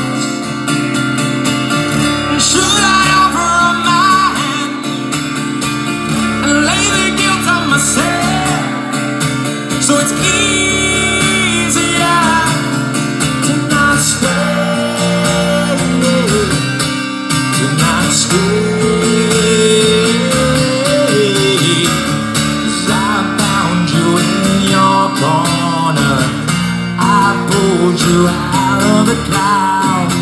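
Live acoustic performance: a strummed steel-string acoustic guitar with a man singing lead through a PA.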